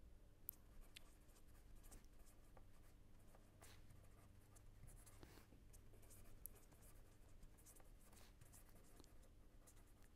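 Faint scratching and tapping of a pen writing on paper in short, scattered strokes, over a low steady hum.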